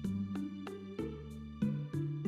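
Calm instrumental background music: single notes struck about every half second, each ringing on over a held low tone.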